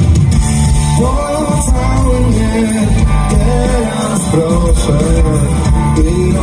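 Live rock band playing loudly through a concert PA, with electric guitar and singing.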